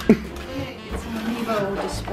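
A person's voice: a short, loud exclamation that falls in pitch just after the start, then quieter talk near the end.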